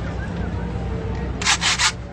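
Aerosol spray-paint can hissing in a few quick short bursts about one and a half seconds in, over a steady low street rumble.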